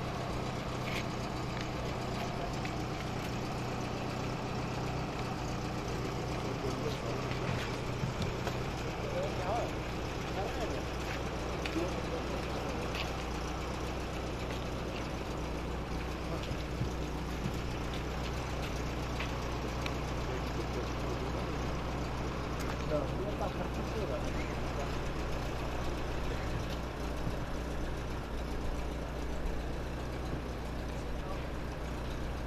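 A vehicle engine idling steadily, with people talking faintly in the background.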